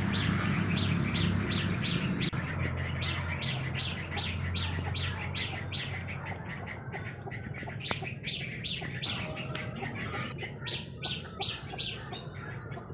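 A bird calling a short high note over and over, about three times a second, breaking into faster, varied notes near the end. A low steady hum runs under the first half.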